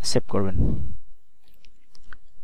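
A man's voice for about a second, then a few faint computer mouse clicks near the end.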